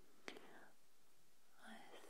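Near silence with one faint, sharp click about a third of a second in, then soft whispering begins near the end.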